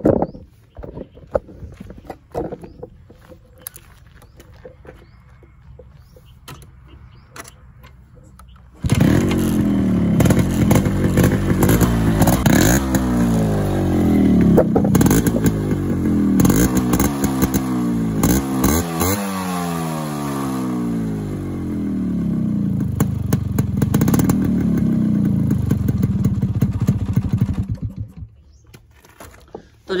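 Yamaha RX100's single-cylinder air-cooled two-stroke engine, a 1989 model. After some light clatter and knocks, the engine starts suddenly about nine seconds in and is revved again and again, its pitch rising and falling with each blip of the throttle. It stops abruptly a couple of seconds before the end.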